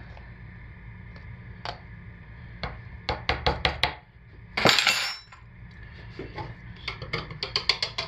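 A small metal spoon and a small wire whisk clinking and tapping against plastic jars and pitchers: a quick run of taps about three seconds in, a short scraping rush about halfway, then another run of quick clinks near the end.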